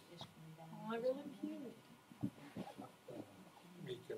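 A person's voice in a small room, with a drawn-out vocal sound that rises and falls about a second in, followed by shorter bits of speech.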